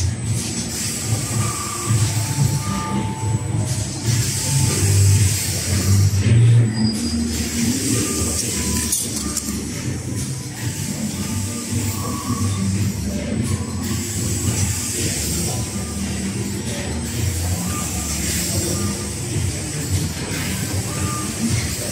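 Background music over a rotary-table screen printing machine running steadily, its mechanical rumble and hiss continuous underneath.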